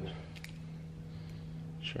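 A single sharp snip of bonsai shears about half a second in, cutting back a stripped juniper deadwood (jin) branch, over a low steady hum.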